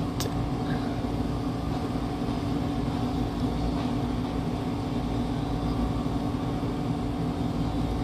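Steady background hum with a low steady tone, unchanging and with no distinct events.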